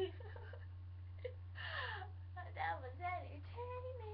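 A girl laughing, then making wordless vocal sounds whose pitch slides up and down, ending on a held note. A steady low electrical hum runs underneath.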